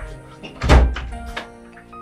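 A single loud thump about three-quarters of a second in, with a lighter knock soon after, over steady background music.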